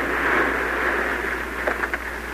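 Radio-drama sound effect of a steady rushing hiss, loudest at first and easing a little, in an old 1940s broadcast recording.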